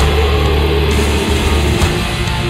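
Atmospheric doom metal: heavy guitars and bass holding long low notes, the low notes changing about a second in and again near the end.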